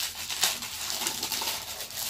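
Clear plastic wrap crinkling and crackling as it is handled and peeled back from a pie, with a sharper crackle about half a second in.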